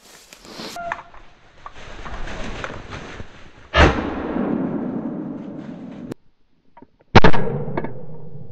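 Two shotgun shots fired at flushed woodcock. The first comes about four seconds in and rings out for about two seconds; the second, louder one comes about seven seconds in, after a short quiet gap.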